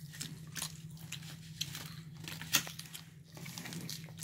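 Close-up eating sounds: biting and chewing, with a scatter of short crisp crunches and crackles, over a steady low hum.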